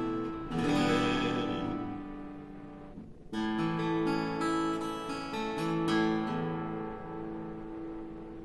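Acoustic guitar playing the closing chords of the song: three strummed chords, each left to ring and fade away.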